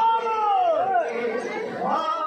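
Voices talking and calling out amid crowd chatter, with no drumming.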